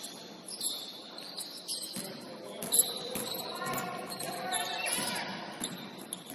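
Basketball game play on a hardwood gym floor: the ball bouncing and sharp knocks, sneakers squeaking, and players' voices in an echoing hall. The loudest is a single sharp knock a little before the middle.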